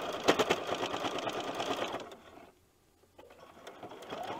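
Domestic sewing machine running, stitching through several layers of pieced fabric strips, and sounding quite loud. It slows and stops about two seconds in, then starts sewing again near the end.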